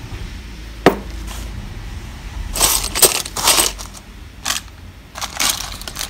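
Costume jewellery being sifted by hand in a jewellery box: bead necklaces and chains rattling and clinking in several short bursts, with one sharp click about a second in.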